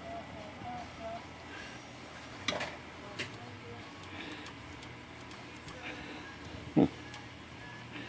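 Two light clicks from an IBM Model C electric typewriter's mechanism being worked by hand, over quiet room tone.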